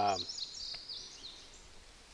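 A small songbird twittering in quick, high chirps that die away after about a second, over faint outdoor background hiss.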